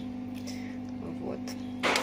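A metal spoon stirring thick borscht in a stainless steel pot on a gas stove, over a steady low hum, with one short spoken word.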